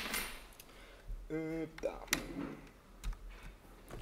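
Small clicks and light metallic rattles of a USB stick being handled and pushed into a laptop's USB port, with a few sharp clicks in the second half. A brief hummed voice sounds about a second in.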